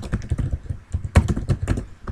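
Computer keyboard typing: a quick, uneven run of key clicks, the loudest strokes a little past a second in.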